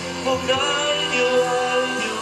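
A male vocalist sings a slow ballad with orchestral accompaniment, holding long notes.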